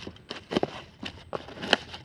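A blade slitting packing tape and cardboard on a parcel: a few irregular crackles and short scrapes.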